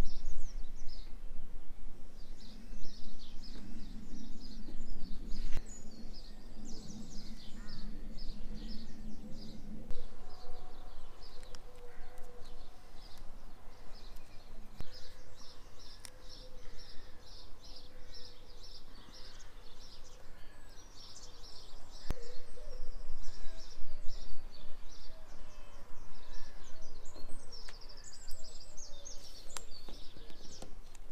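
Small birds chirping and singing, with a steady low rumble underneath and a few faint clicks.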